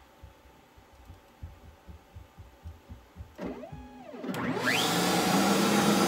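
A DeWalt 611 trim router and a shop vacuum start up about four seconds in. The router's whine rises as it spins up, and both settle into loud, steady running. Before that there are only faint low knocks and a brief whine that rises and falls.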